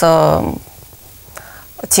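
A woman speaking: a drawn-out syllable, then a pause of about a second and a half before she goes on.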